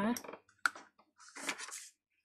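Water being sprayed from a hand-pump mister onto a painted card: a short spritz about half a second in, then a longer hiss of spray near the end.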